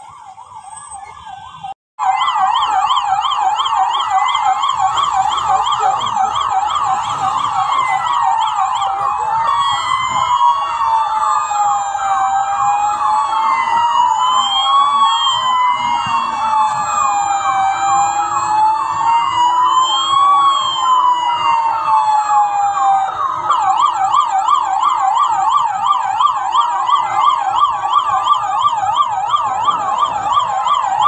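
Police vehicle sirens in a convoy: a rapid yelp sweeping up and down, loud after a short dropout near the start. Through the middle stretch a second siren joins it with slow rising-and-falling wails, then the rapid yelp carries on alone.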